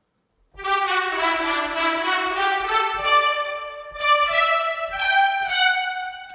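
Sampled two-trumpet section from the Fluid Brass library playing chords of short, biting notes through its ambient microphone position. It starts about half a second in, and new chords strike at intervals of about a second.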